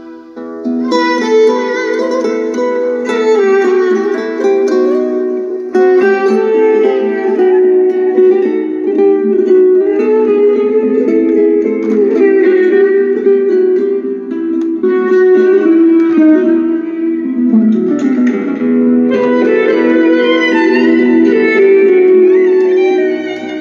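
A song with plucked guitar playing through the small built-in speakers of a Sony CFD-S03CP portable CD/cassette radio. The sound is thin, with almost no bass. After a brief lull, the music comes in about a second in and then plays steadily.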